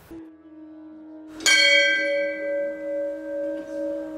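A bell struck once about a second and a half in, ringing on with a slow, wavering fade; a faint lower tone hums before the strike.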